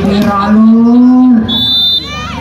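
A man's voice calling out one long drawn-out note that rises slightly, then a short, shrill referee's whistle blast near the end.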